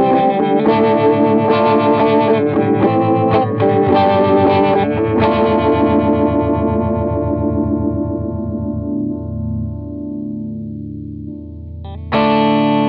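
Electric guitar, a Paul Reed Smith CE 24, played through a Poison Noises Lighthouse Photo-Vibe, an all-analog photocell phaser/vibrato pedal. Chords are strummed in a steady rhythm for about five seconds, then a last chord is left to ring and fade with an even, pulsing phase sweep. A new strum comes right at the end.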